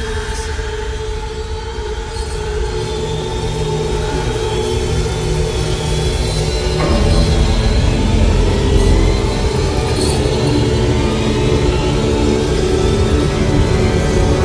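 Eerie horror-film score: sustained droning tones over a deep low rumble, slowly swelling in loudness and growing denser about halfway through.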